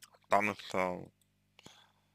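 A man's brief hesitation sound, two short voiced syllables with falling pitch, over a faint steady low hum, with a couple of small clicks.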